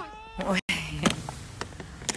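A toddler's long, high-pitched vocal sound held almost on one pitch, cut off abruptly about a third of the way in, followed by light clicks from the toy box being handled.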